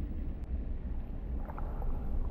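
Steady, deep underwater rumble of a film soundtrack's ocean ambience.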